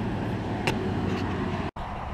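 Steady noise of highway traffic going by, with a brief dropout in the sound near the end.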